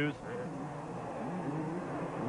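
Several 250cc two-stroke motocross bikes racing, their engines revving up and falling back in pitch, heard faintly as track audio under a TV broadcast.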